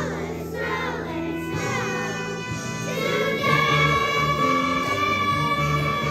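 Children's choir singing with instrumental accompaniment underneath. About three seconds in, the voices settle onto a long held high note.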